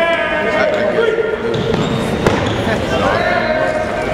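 A line of men chants with a held shout, then stomps on a hardwood gym floor in dull thuds, with one sharp crack a little past two seconds in.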